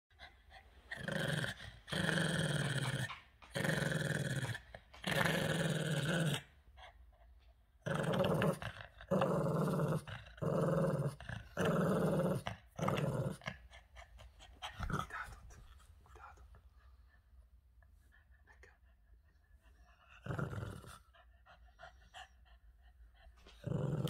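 Boston terrier growling in about ten growls of about a second each, then quieter with one more growl about twenty seconds in. The dog is guarding a rubber ball held in its mouth and won't give it up.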